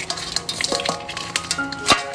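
Steel cleaver scraping and knocking against mud crab shells in an aluminium basin: a run of clicks and clatters with some metallic ringing, and a sharper knock near the end.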